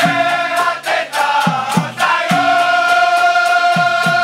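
Dikir barat chorus of men singing together in unison, with regular percussion beats under them for the first two seconds, then one long held note from about two seconds in.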